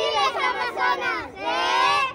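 A group of girls shouting a team cheer together in a huddle, their high voices overlapping and building into one long shout near the end.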